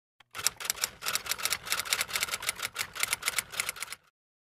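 Typewriter sound effect: a fast run of key clacks, about eight a second, that cuts off suddenly.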